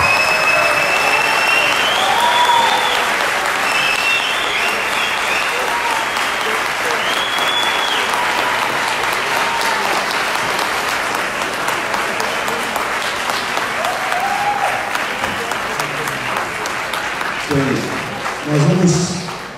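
Audience applauding steadily, with a few voices calling out over the clapping in the first half. The applause thins out near the end.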